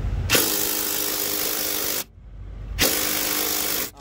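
Cordless drill driving a 10 mm socket on a long extension, run in two bursts of steady motor whir, the first about a second and a half, the second about a second, with a short pause between. The bolt does not loosen; the mechanic wonders whether the drill's battery is weak or the bolt is simply very tight.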